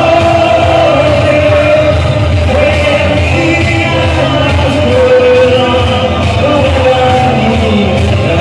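Loud pop music with a sung vocal of long held notes over a steady bass, played through a disco sound system.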